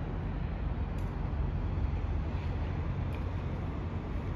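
Steady low rumble and hiss of outdoor city background noise.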